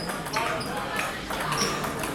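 Table tennis rally: the celluloid ball clicking off the rackets and the table, several sharp hits a fraction of a second apart, over voices in the hall.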